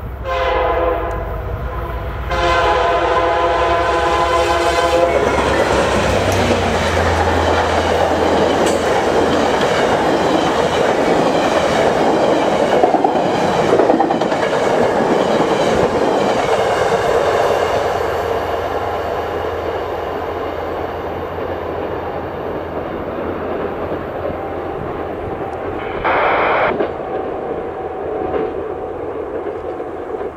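VIA Rail passenger train led by F40PH-2 diesel locomotives sounding its horn in blasts for the first five seconds, then rushing past at speed with loud wheel-on-rail and car noise that eases off over the last ten seconds. A brief burst of noise comes near the end.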